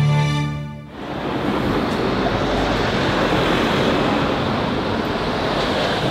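A held musical chord fades out about a second in, followed by a steady, even rushing noise.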